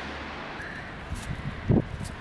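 Light wind on the microphone over steady outdoor background noise, with a few soft rustles and one short crunch about three-quarters of the way through as a hand scoops up freshly fallen hailstones from the ground.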